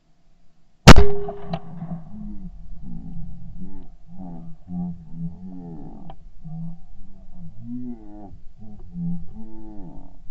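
A single loud shotgun shot from a 12-gauge Yildiz Elegant A3 TE side-by-side, fired about a second in, sudden and sharp with a short ringing echo after it.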